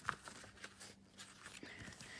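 A paper page of a small paperback book being turned by hand: a sharp flap just after the start, then a few faint rustles.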